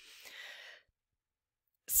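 A person's audible breath, a soft rush lasting under a second, followed by a second of silence before speech resumes near the end.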